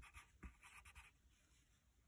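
Graphite pencil scratching faintly on paper in short strokes while a word is written, fading to near silence about halfway through.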